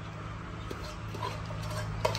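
Two dogs eating rice from a metal bowl and a pan: soft chewing and small clicks against the dishes, over a steady low hum.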